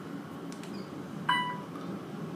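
A short beep about a second in as an elevator car call button is pressed, over the steady background hum inside the elevator car.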